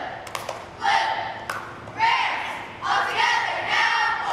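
A group of girls chanting a cheer in unison, one shouted phrase about every second, with a few sharp smacks in between.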